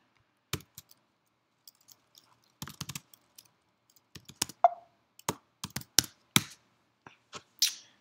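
Computer keyboard keys clicking in irregular bursts as short commands are typed, with a short ping about halfway through.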